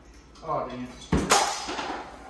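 A disc golf putter hits the chains of an indoor disc golf basket just after a second in: a sharp clank, then a jingle of chains that dies away. Just before it there is a short vocal sound.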